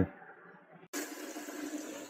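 Water running steadily from a wash-basin tap into the basin, starting suddenly about a second in. The newly fitted water heater has filled and is now passing water through to the hot tap.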